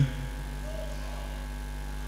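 Steady low electrical hum and buzz from the church's microphone and PA system, with no voice on it.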